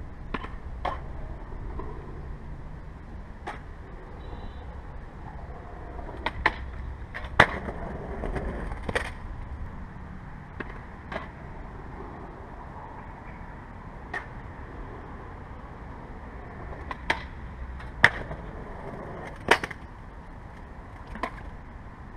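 Skateboard at a concrete skatepark: about a dozen sharp clacks and slaps of the board on concrete and metal, scattered through, the loudest two about seven and eighteen seconds in, over a low rumble of wheels and outdoor noise.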